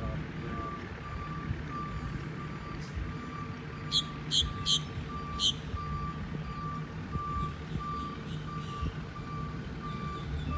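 Distant seaplane engine droning steadily on its takeoff run across the lake. A faint high tone pulses about twice a second over the drone, and a few short, high chirps come about four seconds in.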